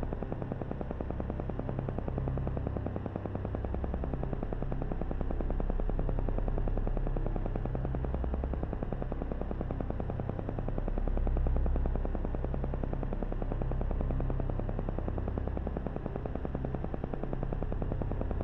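Synthesized meditation background track: a rapid, even electronic pulsing over a low hum that slowly swells and fades.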